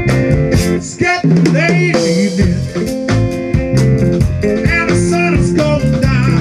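Live blues band playing: a harmonica played through the vocal microphone, with bent, wavering notes, over a drum kit and electric guitars.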